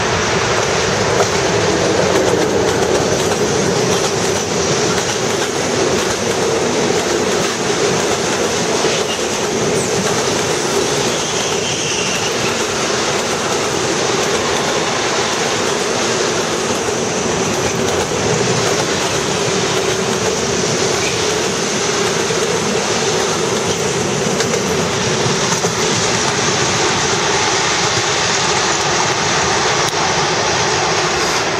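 An ST43 (060DA) diesel-electric locomotive passes close by, loudest in the first few seconds, followed by a long freight train of tank wagons rolling past with a steady rumble and clickety-clack of wheels over the rail joints.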